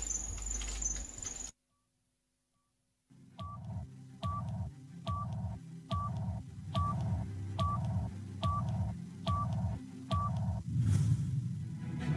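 A broadcast countdown sound effect: nine short electronic beeps, a little more than one a second, over a low pulsing beat, with a swell near the end leading into the show's theme. Before it, faint studio noise cuts off to a second and a half of silence.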